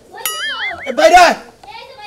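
A whistle-like comic sound effect, a pitched tone that wobbles up and down in pitch for under a second. Just after it, about a second in, comes a brief loud vocal exclamation.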